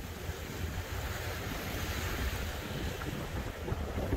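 Steady rush of wind and water aboard a cabin cruiser under way on the river, with low wind rumble buffeting the microphone.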